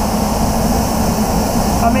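Paint spray booth ventilation running: a steady rush of moving air with a low hum underneath.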